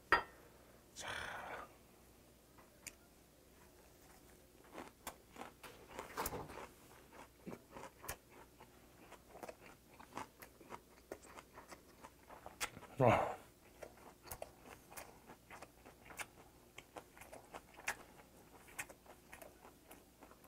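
Close-up chewing of a mouthful of pumpkin-leaf ssam with river-snail doenjang, pork bulgogi, raw garlic and green chilli: many small wet clicks and crunches.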